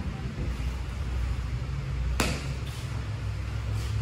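A single sharp slap about two seconds in, with a couple of fainter taps near the end, over a steady low hum.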